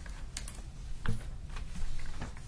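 Sheets of paper being handled and shuffled on a desk, with a few sharp taps and one heavier knock about a second in.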